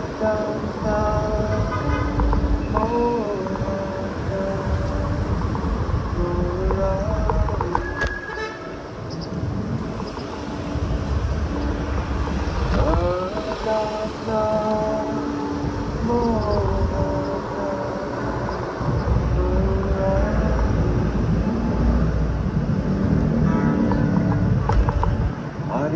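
Slow melodic singing, long held notes that slide from one pitch to the next, over steady wind and road rumble from a moving bicycle in traffic.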